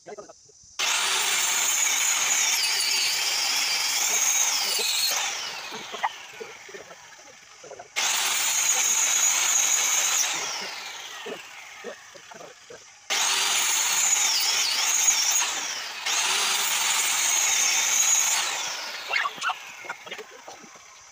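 Small handheld electric circular saw cutting wooden planks: four times the motor is switched on abruptly at full speed, runs with a high whine for two to four seconds, then is let off and winds down with a falling pitch.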